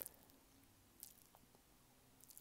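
Near silence: room tone with two faint, short clicks about a second apart.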